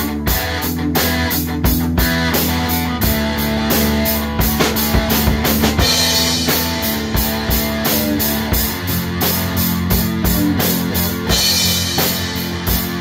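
Live rock band playing an instrumental passage: electric guitar, bass guitar and drum kit, the drums keeping a steady beat under sustained guitar notes.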